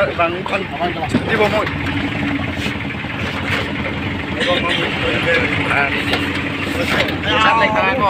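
Engine running and road noise heard from the open back of a small goods truck on the move, a steady low hum under continuous rumble, with voices chatting briefly near the start and again near the end.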